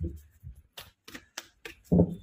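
A tarot deck being shuffled by hand: a quick run of crisp card snaps, about four a second, with a duller thump at the start and another near the end.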